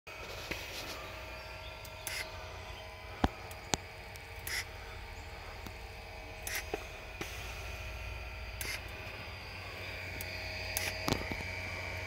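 Quiet outdoor ambience: a low steady rumble with faint steady tones, two sharp clicks a little past three seconds in, and a few brief higher-pitched sounds scattered throughout.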